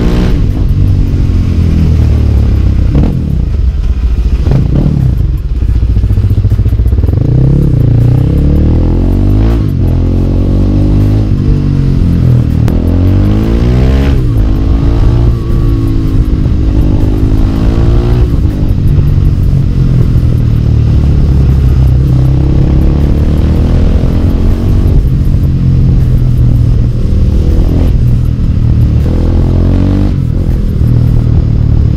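Motorcycle engine heard from on board while riding, its pitch rising and falling over and over as the rider rolls the throttle on and off and changes speed through the lanes, over a steady low rumble.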